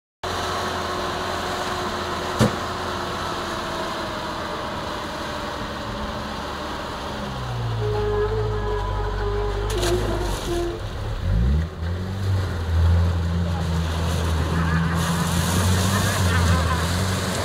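Land Rover engine running as the 4x4 drives down a bank into a muddy pond, with a single sharp knock a couple of seconds in. About two-thirds of the way in the revs rise sharply and the engine pulls harder under load as it ploughs through the water, with a splashing hiss near the end.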